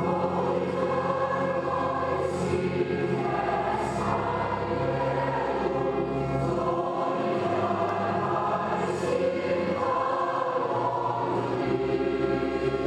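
A choir singing slow, sustained chords, moving to a new chord every three seconds or so.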